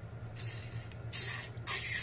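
Close-miked mouth slurping and sucking while eating a sauce-dipped shrimp, in three short hissy bursts, the last two loudest.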